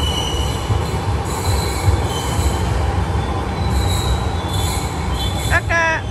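Palembang LRT train pulling into an elevated station platform: a steady rumble with thin, high wheel squeals that come and go on the rails.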